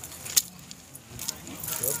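A single sharp click about half a second in, the loudest sound here, among fainter clicks, with a voice starting to speak near the end.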